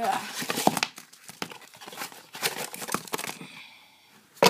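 Paper and cardboard ration packaging crinkling and rustling in irregular bursts as it is handled and opened. The rustling fades away near the end.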